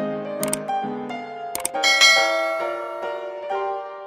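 Soft background music with sustained keyboard notes, overlaid by a subscribe-button animation's sound effects: two sharp clicks about a second apart, then a bright bell-like chime about two seconds in that is the loudest sound.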